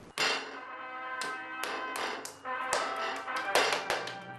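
Background music: a run of sharply struck notes, roughly two a second, with sustained pitched tones ringing between them.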